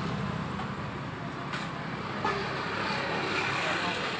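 Steady road traffic noise, a low hum of passing vehicles, with faint voices in the background.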